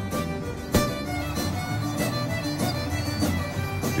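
Fiddle-led music with accompaniment and a beat. A sharp hit just under a second in is the loudest moment.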